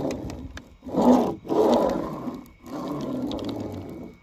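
Toy monster truck's rubber wheels rolling through wet paint over paper on a board, pushed back and forth in rumbling strokes about a second long with short pauses between.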